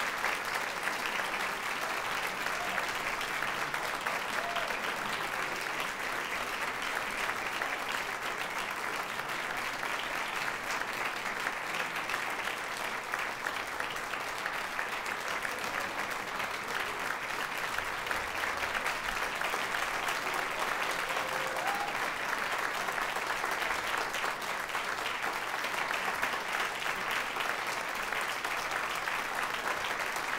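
Large audience applauding steadily, a dense unbroken patter of clapping that neither builds nor fades.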